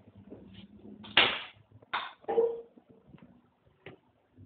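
A door banging shut about a second in, followed by two more knocks and a small click near the end, as the door closes on a rubber glove packed with cherry tomatoes.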